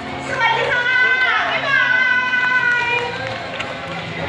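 A person's voice with long drawn-out syllables, over a low steady hum and faint crowd noise.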